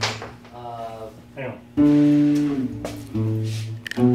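Acoustic guitar strummed, a few chords each struck and left to ring for about a second.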